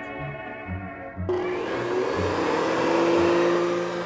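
Vacuum cleaner (a 'sweeper') switched on about a second in, its motor whining up to speed and then running steadily.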